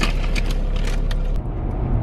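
Road noise inside a moving car: a steady low rumble of tyres and engine with a hiss of spray while passing alongside a lorry on a wet road. About one and a half seconds in it changes abruptly to a smoother motorway cabin hum.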